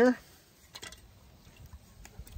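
Faint light clinks and water movement from a metal spoon and hand in a skillet of hot water as it is wiped out, with one small click about a second in.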